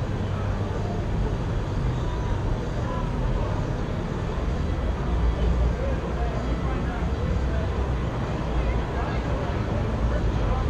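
A steady low rumble with faint, indistinct voices underneath.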